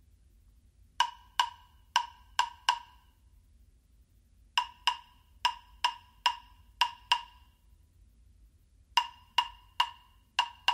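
Redwood hollow-body claves struck together: bright, ringing wooden clicks in three short rhythmic phrases, about five strikes, then about eight, then four, with pauses between.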